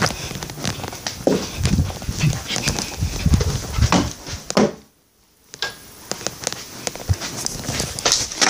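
Handling noise from a handheld phone being carried and swung around: rubbing, scraping and dull bumps against the microphone. The sound cuts out completely for about a second halfway through.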